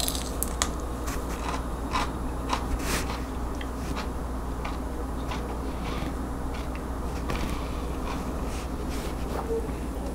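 A person chewing a piece of raw Marconi sweet pepper, with short crisp crunches and clicks scattered through, most of them in the first few seconds. A steady low hum runs underneath.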